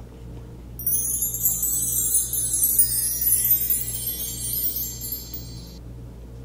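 Wind-chime sound: a shimmering cascade of many high chime tones that starts suddenly about a second in and cuts off just before the end, over a faint steady low hum.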